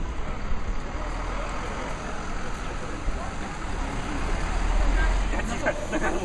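Steady rushing noise of rain and flowing hot-spring water, with a low rumble of wind on the microphone that swells about four to five seconds in. Faint voices of passers-by near the end.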